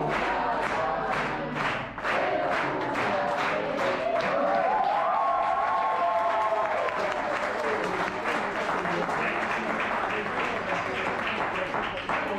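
A room of diners clapping in a steady rhythm, about three claps a second. In the middle, a group of voices sings along in one rising-and-falling line.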